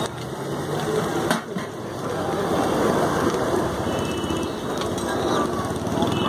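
Diced potatoes frying in oil on a large flat iron griddle at a street food stall, with people talking in the background.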